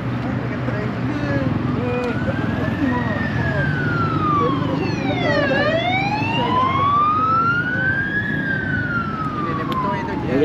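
An emergency vehicle's siren wailing, its pitch rising and falling slowly through about two full sweeps, over the steady noise of passing road traffic.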